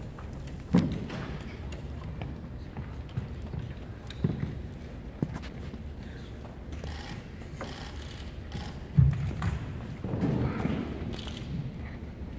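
Room noise in a large hall, broken by a handful of scattered knocks and thumps as people move about and objects are set down on a table, with faint murmured voices near the end.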